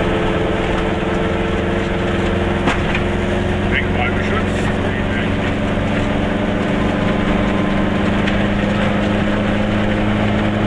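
Goggomobil's two-stroke twin engine running steadily at cruising speed, heard from inside the small car's cabin, its drone holding one pitch. A single sharp click sounds a little under three seconds in.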